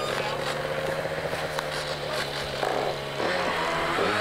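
Motorbike engine running at a steady speed, its pitch easing slightly lower, then changing about three seconds in.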